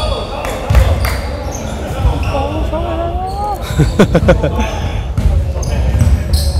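A basketball bouncing on a hardwood gym floor during play: a couple of sharp bounces just under a second in and a quick cluster of bounces about four seconds in.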